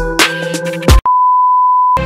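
Electronic dance music with heavy bass drum hits cuts off halfway through. A single steady electronic beep tone, like a censor bleep, is then held alone for about a second.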